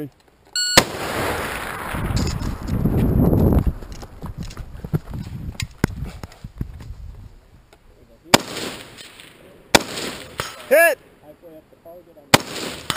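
Electronic shot-timer beep about half a second in, followed by a few seconds of rustling and handling noise as the shooter gets into position, then two rifle shots about a second and a half apart near the end.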